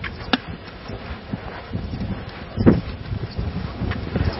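Wind buffeting the microphone as an irregular low rumble, with a sharp click about a third of a second in and a brief louder sound a little after halfway.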